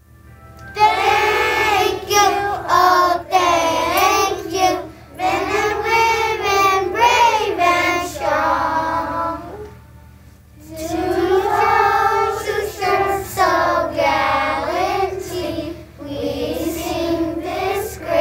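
A group of young children singing a song together. The singing starts about a second in and breaks off briefly about ten seconds in before going on.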